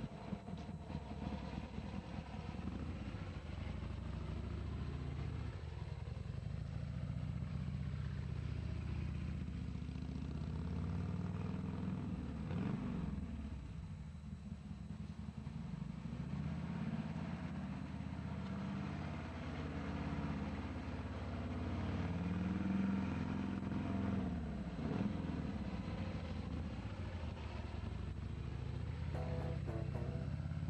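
Harley-Davidson motorcycle's V-twin engine running as the bike is ridden around, its pitch rising and falling in several slow swells as it speeds up and slows down.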